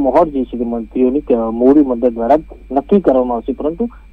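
Speech only: a news reporter talking continuously in Gujarati, with a faint steady high tone running underneath.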